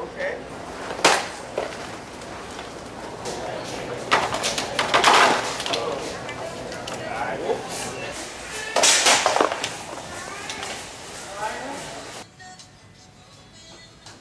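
A man falling to a store floor on purpose: several sudden loud thuds and clatters, about a second in, around four to five seconds in, and around nine seconds in, among shoppers' voices and background music. Near the end it drops to quieter music alone.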